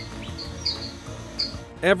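Soft background music with short, high bird-like chirps repeating every few tenths of a second.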